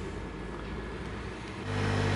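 Steady faint hiss, then a steady low machine hum with several tones cuts in suddenly near the end.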